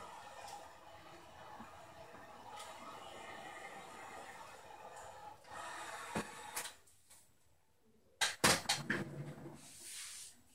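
Heat gun blowing steadily, then stopping, followed by a few sharp knocks and clicks of tools being handled and set down.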